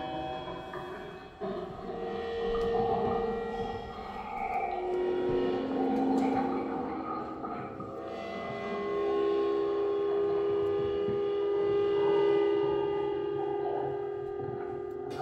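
Free improvised music from a modular synthesizer and drum kit: layered sustained tones that shift in pitch every second or two, settling into a long steady drone from about eight seconds in, with light metallic cymbal sounds.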